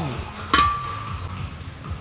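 A single sharp metallic clink from gym equipment about half a second in, ringing briefly. Background music with a steady bass plays throughout.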